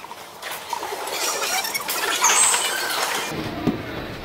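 Rink noise of an inline hockey game in progress: a steady hiss and clatter of skate wheels, sticks and puck on the floor, with a brief high squeak about two seconds in.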